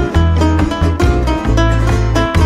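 Instrumental son jarocho passage: plucked string melody over strummed jaranas, with a double bass playing sustained low notes.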